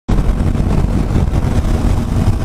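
Motorcycle on the move: engine running and a loud, steady rush of wind and road noise on the handlebar-mounted camera's microphone, heaviest in the low end.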